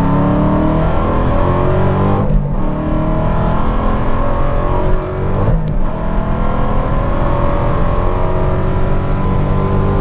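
Hennessey HPE850-tuned Dodge Challenger Hellcat's supercharged 6.2-litre Hemi V8 at full throttle, heard from inside the cabin. The engine pitch climbs steadily, with two brief dips for upshifts about two and a half and five and a half seconds in, then keeps climbing.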